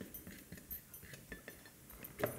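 A few faint, light clinks and taps as a utensil scrapes ground spices off a small ceramic dish into a stainless steel saucepan.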